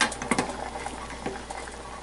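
Pot of pasta shells bubbling hard at the boil, with a wooden spoon stirring and knocking against the saucepan. Several sharp knocks come in the first half second, over a steady bubbling hiss.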